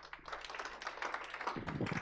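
Audience applauding: many hands clapping at once in a dense patter that grows a little louder.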